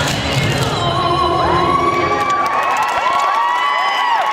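Audience cheering, with many high-pitched whoops and screams overlapping, as a clogging routine finishes. The music and clogging taps fade out in about the first second.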